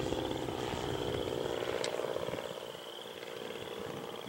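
The 85cc gas engine of a large RC aerobatic plane, a Hangar 9 Sukhoi, running steadily in flight overhead, a little quieter about two-thirds of the way through.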